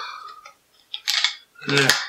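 A plastic bag of salad leaves crinkling in one short burst about a second in as it is pinched and pulled at to get it open.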